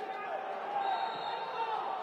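Footballers shouting to one another on the pitch, several voices overlapping, with no crowd noise from the empty stands. A single sharp knock of a ball being kicked comes right at the start.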